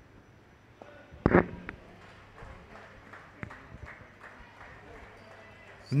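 A leather cricket ball struck hard by a bat about a second in, one sharp crack, the shot that goes for six; faint outdoor field sounds follow, and commentary starts at the very end.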